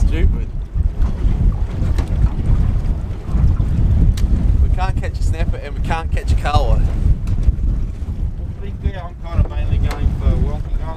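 Wind buffeting the microphone: a heavy, steady low rumble over the wash of choppy sea, with brief indistinct voices about five to seven seconds in.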